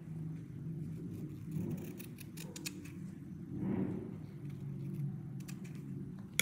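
Scissors snipping through sheer ribbon as its ends are cut on the diagonal, with soft rustling of the ribbon and a few small clicks of the blades.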